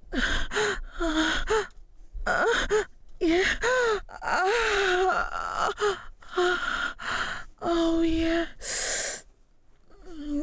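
A woman gasping and moaning in a string of short, breathy sounds, some gliding up and down in pitch: sounds of sexual pleasure.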